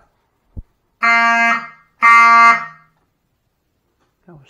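Fire alarm horns sound two short buzzy pulses about a second apart: the walk-test coding that signals an activated device on zone two. A single short knock comes just before them.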